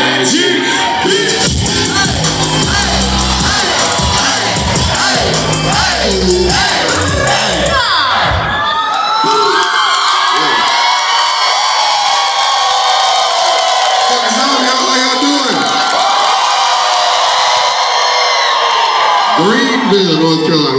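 Hip-hop track with a heavy bass beat played loud over a concert PA while a crowd cheers. About nine seconds in the bass cuts out, leaving the crowd screaming and cheering, and the beat comes back near the end.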